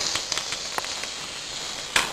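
A sucking sound effect made with the mouth: a steady crackly hiss with faint clicks that stops suddenly near the end.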